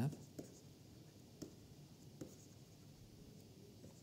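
Stylus writing on a tablet: faint scratching strokes with a few light taps.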